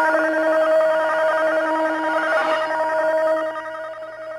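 Electronic tones carried by the shortwave broadcast: a rapid warbling trill, like a telephone ring, over steady held tones, fading out near the end.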